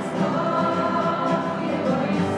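A small group of children singing together to strummed acoustic guitars, holding long sung notes.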